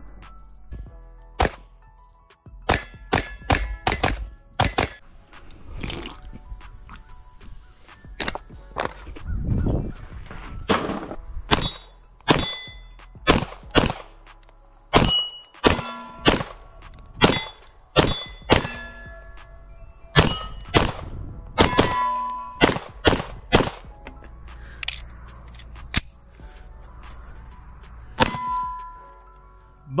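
Springfield Prodigy 9mm pistol firing strings of shots at steel targets, each hit answered by the ringing clang of a steel plate. The shots come in quick bursts with short pauses between them. The pistol cycles shot after shot without stoppages.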